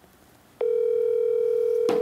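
Steady electronic telephone ringing tone from a smartphone's speaker as an outgoing call is placed. It starts about half a second in and holds at one even pitch for about two seconds.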